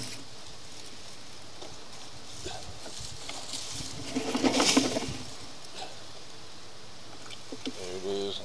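Plants and dry leaves rustling and brushing against the sewer inspection camera head as it is moved through a garden bed, loudest in one brief burst about halfway through, over a steady low hiss.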